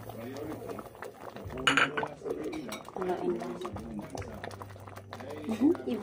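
A metal utensil clinking and scraping in an aluminium cooking pot of coconut milk and banana pieces, with one sharp clatter about two seconds in. Voices talk in the background over a low steady hum.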